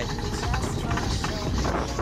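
Alpine coaster sled running fast along its steel tube rails, a steady rumble with wind buffeting the phone microphone, and a few short high-pitched notes over it.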